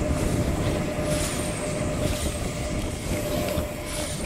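Steady low rumble of outdoor wind noise with a faint, constant hum underneath.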